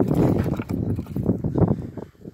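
Hands rummaging through small objects and debris in the wooden base of an opened sofa: a quick, irregular run of close knocks, clicks and rustles that dies down near the end.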